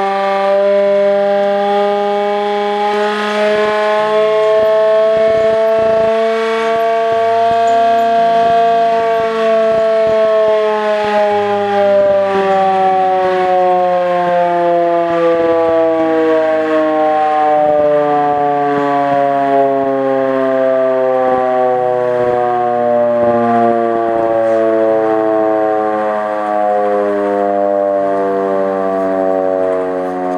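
Hand-cranked air raid siren wailing continuously as its handle is turned. The pitch rises a little over the first several seconds, then falls slowly through the rest.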